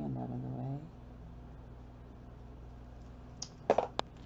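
A short, low, pitched vocal sound, like a hum or moan, lasts about a second at the start. Near the end come two sharp clicks.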